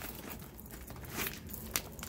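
Handbags being rummaged and handled: quiet rustling with a couple of light clicks, one about a second in and one near the end.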